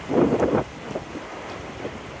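Wind buffeting a phone's microphone, with a strong gust in the first half second, over a steady wash of surf and wind.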